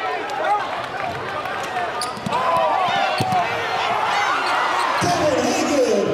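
Basketball game sound in a gym: many crowd voices calling and shouting, with a few sharp thuds of the ball bouncing on the hardwood floor about two to three seconds in.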